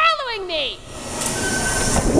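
A voice trails off at the start, then a subway train's rumble builds through the second half, with a thin, steady wheel squeal over it.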